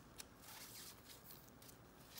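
Near silence with faint handling of a stack of trading cards: light ticks and slides of card stock as gloved fingers shift the cards, the clearest tick just after the start.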